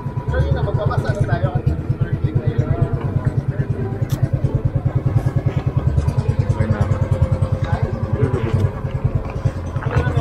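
Motorised outrigger boat's engine running steadily underway, a fast, even low throb. Voices of people on board can be heard faintly under it.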